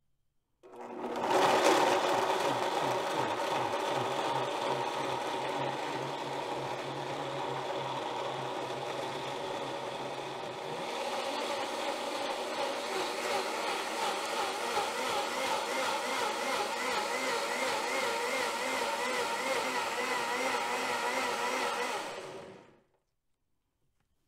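Blendtec blender running its preset juice cycle, blending soaked cashews and water into cashew cream. It starts about a second in, shifts pitch about halfway through, and cuts off shortly before the end.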